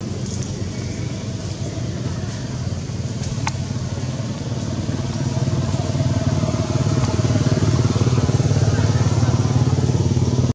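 A vehicle engine running steadily, growing louder over the second half, with a single sharp click about three and a half seconds in.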